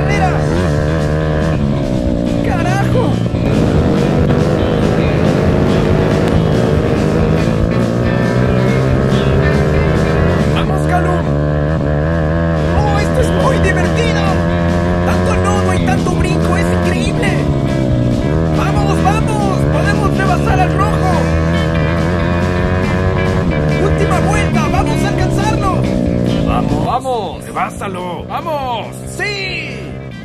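Racing kart engine revving up and falling back again and again as the kart is driven hard, with background music playing over it.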